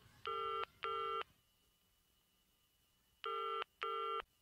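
Telephone ringing tone heard down the line by the caller, in the British double-ring pattern: ring-ring, a two-second pause, then ring-ring again. The call goes unanswered.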